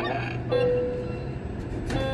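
Steady low hum of a flight simulator's simulated airliner engines and cockpit, with a single steady tone held for about a second starting half a second in.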